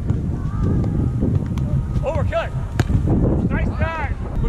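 Wind rumbling on the microphone through a beach volleyball rally. A sharp slap of the ball being hit comes a little under three seconds in, and players give short shouted calls around it.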